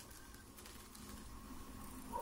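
Faint room tone: a low, steady background hum with no distinct sound event.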